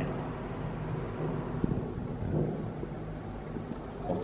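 Steady low rumble and hum of background noise inside a steel ship compartment, with a couple of faint knocks.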